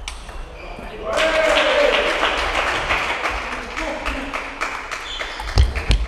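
A loud shout with a falling pitch about a second in, then a few seconds of voices and the sharp clicks of table tennis balls in a large hall, with a low thud near the end.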